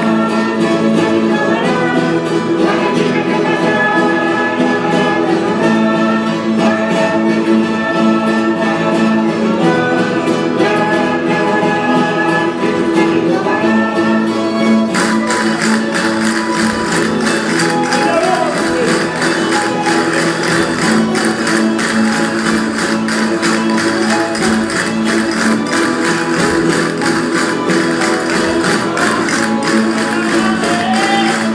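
Valencian jota played live by a folk string band of guitars and lutes, a held melody carried over a steady plucked accompaniment. About halfway in, the playing changes to a brighter, dense strummed rhythm with fast clicking strokes.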